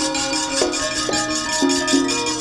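Gamelan accompaniment to a wayang kulit scene: ringing metallophone notes struck one after another over a rapid, even metallic clatter of the dalang's kecrek plates, about six or seven strokes a second.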